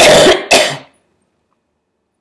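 A woman coughing twice in quick succession into her fist, two loud harsh coughs about half a second apart.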